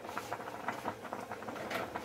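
Spaghetti boiling in a pan of water: a steady, irregular crackle of small bubbling pops.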